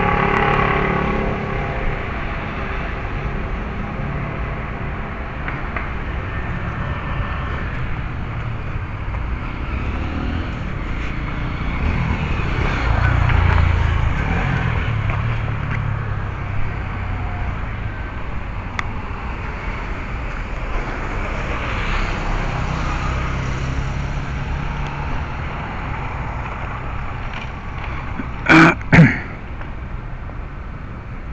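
Steady city street traffic rumble, swelling as a vehicle passes about halfway through. Near the end come two short, loud pitched sounds about half a second apart.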